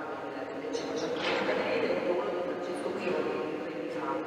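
A woman speaking, lecturing into a microphone.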